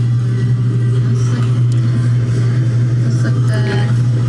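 A loud, steady low hum that holds one pitch throughout, with faint talk underneath.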